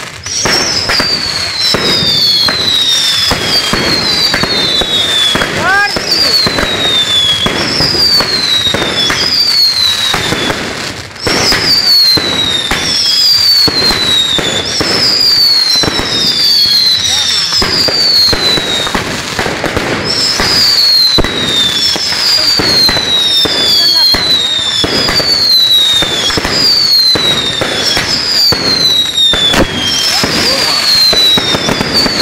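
Ground fireworks going off in a long string of whistles, each falling in pitch and coming about once a second, over constant crackling and popping.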